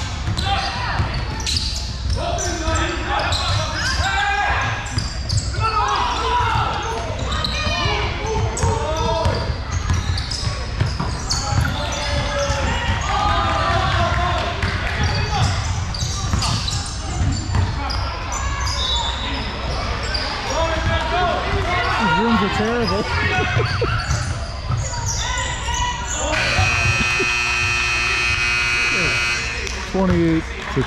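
Basketball dribbling and players' and spectators' voices echoing in a large gym. Near the end a scoreboard buzzer sounds one steady note for about three and a half seconds, marking the end of the half.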